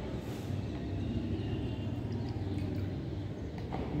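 Steady low background hum of the room, with no distinct sounds over it.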